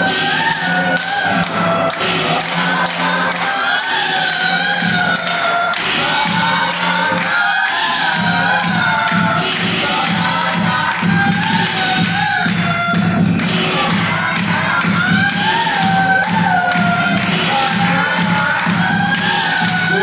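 Played-back song with a sung vocal melody over a steady beat, loud throughout.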